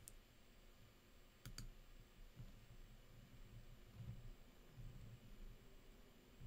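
Near silence, broken about one and a half seconds in by a quick double click of a computer mouse.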